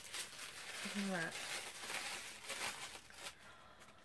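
White tissue paper crinkling and rustling as a small wrapped item is unwrapped by hand. It stops a little after three seconds in.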